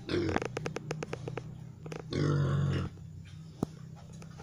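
Young crossbred gilt (Pietrain × Landrace × Large White) grunting, with one longer, louder grunt about two seconds in, while short sharp taps, likely her trotters on the concrete floor, click throughout.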